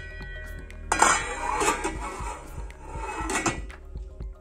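A stainless steel lid is put onto a metal cooking pot, scraping and clinking against the rim for about two and a half seconds, starting about a second in. Soft background music plays underneath.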